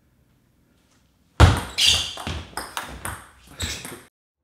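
Table tennis ball struck by a racket on a serve and bouncing on the table: a quick run of about six sharp, ringing clicks that starts about a second and a half in, after silence.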